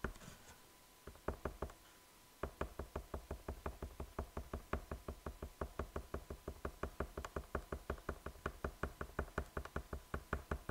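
Fine-tip pen tapping dots onto paper in dot-art stippling, close-miked, in a steady run of about five or six taps a second. The taps break off near the start for about two seconds, with only a couple of taps in the gap.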